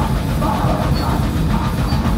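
Live punk band playing loud and continuously: electric guitar, bass and a drum kit.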